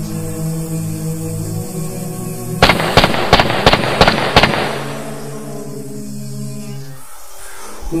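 Low, steady humming drone of chanting voices. About two and a half seconds in it is cut through by a rapid run of six loud, sharp bangs over about two seconds, like firecrackers going off.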